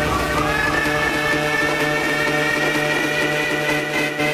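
Music from a DJ set: sustained notes over a steady bass, with a high tone that glides up at the start and then holds.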